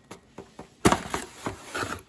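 Cardboard box being opened by hand: a sharp loud tear or snap as a flap comes free a little under a second in, then a few lighter cardboard scrapes and rustles as the flaps are folded back.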